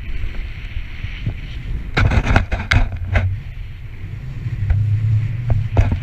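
Wind buffeting an action camera's microphone as a snowboard runs through powder snow, a steady low rumble. A cluster of sharp crackles comes about two seconds in, and a few more near the end.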